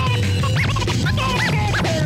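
Turntable scratching: a record on a Technics turntable is pushed back and forth under the needle while the mixer fader is worked, cutting a sample into about seven quick rising-and-falling sweeps over a steady beat.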